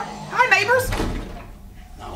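A short spoken line, then a door thuds about a second in, from a TV drama's soundtrack.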